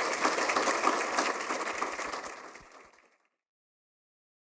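Audience applauding, a dense patter of clapping that fades out about three seconds in.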